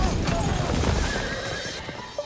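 A horse whinnying, a wavering high call, over a film soundtrack that fades out steadily.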